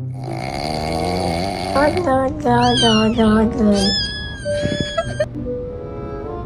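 Meme sound track of cat-like vocal cries, "oh, oh, oh, oh, oh", sliding up and down in pitch over music. It ends in a held high note that cuts off suddenly about five seconds in.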